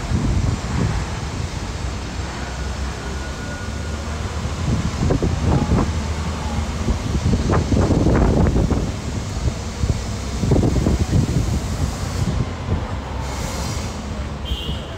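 Steady low rumble of a moving tour bus and the city traffic around it, heard from the bus's open top deck. It swells louder around the middle and again about ten seconds in.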